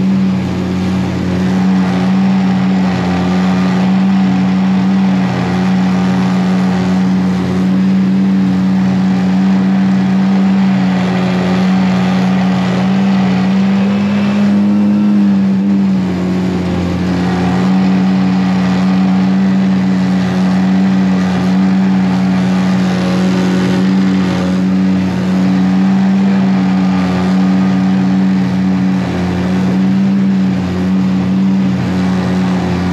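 A jon boat's outboard motor running steadily at cruising speed, a constant hum. About halfway through its pitch rises briefly, then settles back.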